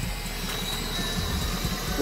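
Wind buffeting the microphone: an uneven low rumble with a faint steady high tone above it.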